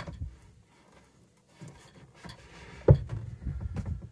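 A small folding camper table being handled and clipped onto a kitchen pod: a light click at the start, some faint handling noise, then a sharp knock nearly three seconds in as the table is set in place.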